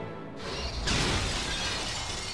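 A car crashing down onto a hard floor, with glass shattering, about a second in, then a noisy decaying clatter of debris.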